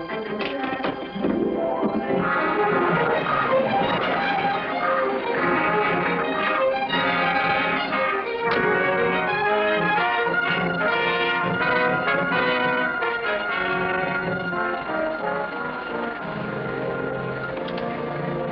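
Orchestral film score with prominent brass, swelling up about two seconds in and carrying on as a busy, full passage.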